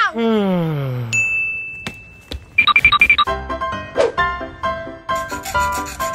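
Edited-in comedy sound effects: a falling pitch glide lasting about a second, a held high beep, then a quick run of ringing pulses. Background music with a steady beat comes in about halfway through.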